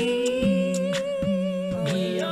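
A cappella vocal music winding down: one long hummed note held over a sung bass line, with sharp beats about twice a second. The sound slowly fades.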